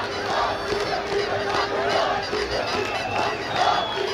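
Large crowd shouting and cheering together, many voices at once. A steady held tone runs through the first half.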